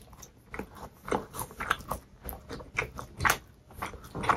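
Close-miked chewing of a mouthful of crusty baked pastry, with irregular crisp crackles and crunches; the loudest crunch comes a little past three seconds in.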